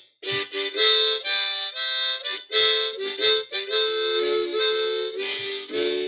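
Harmonica played with cupped hands: a melody of short chords stepping from note to note, with a few longer held notes in the middle.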